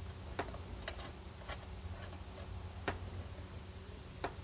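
A few faint, irregular metallic clicks as a brass ferrule fitting is turned by hand into its nut on a steel fuel line, the loudest about three seconds in, over a low steady hum.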